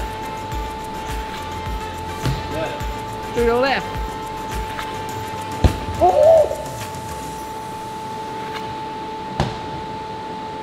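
Suspense music with a steady drone and a regular low beat. About five and a half seconds in, a single sharp crack of a hockey stick striking a ball on the slap shot, followed by short vocal exclamations.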